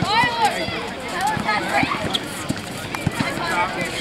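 Background talk from players and spectators, with irregular thumps of basketballs bouncing on the court.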